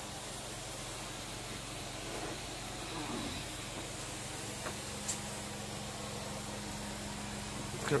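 Carpet pre-spray solution hissing steadily out of a sprayer wand as it mists onto berber carpet, over a steady low machine hum.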